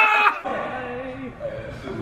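A man's excited wordless shout, loud for the first half-second, then trailing into a quieter, drawn-out cry.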